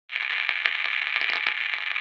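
Crackling static hiss like an untuned radio, a thin, mid-to-high hiss peppered with sharp pops, used as an intro sound effect.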